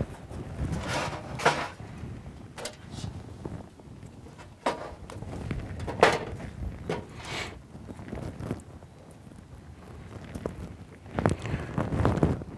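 Scattered light knocks and rustles of fishing tackle being handled on a tabletop, as line, a float and tools are picked up and set down. The loudest knock comes about halfway through.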